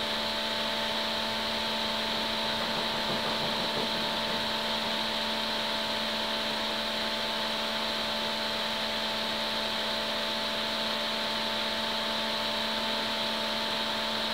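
A steady machine hum with hiss, several tones held unchanging throughout.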